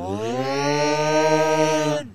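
The Yelling Creature's yell: one long, loud, sustained cry in a low voice that slides up in pitch at the start, then holds on one note and cuts off abruptly after about two seconds.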